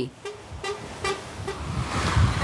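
A vehicle beeping four short times in quick succession, about two and a half beeps a second, over the low rumble of an engine that grows louder toward the end.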